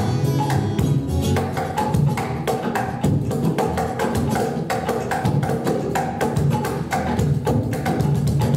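Cuban son music from a small acoustic band: guitar, upright bass and hand drums, with quick percussion strokes over a steady bass line.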